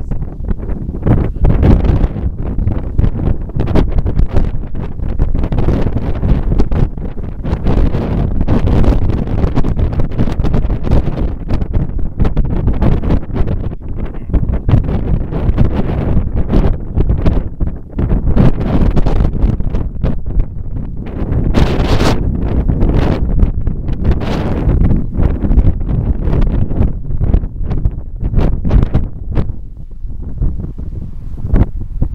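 Strong wind buffeting the camera microphone in loud, irregular gusts.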